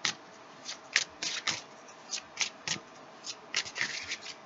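A deck of tarot cards being shuffled by hand: short, irregular rasps of cards sliding against each other, about three a second.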